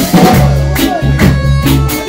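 Live band playing loud: a drum kit keeping a steady beat under sustained bass notes and electric guitar.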